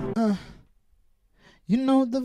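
The looped music stops, a singer's voice gives a short falling sigh-like sound into the microphone, and after about a second of near silence a held sung vocal note comes in near the end.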